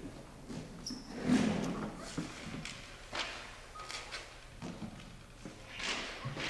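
Concert band settling just before playing: scattered soft knocks, rustles and shuffling of players and chairs, with no music yet.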